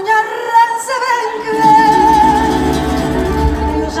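A woman's voice singing a slow fado line through a concert PA in a large hall, holding long notes with vibrato. About a second in, a low sustained accompaniment comes in beneath her voice.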